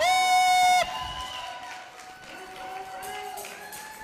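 A high, drawn-out shout held steady for nearly a second at the start, then quieter crowd noise from a congregation with a faint held tone underneath.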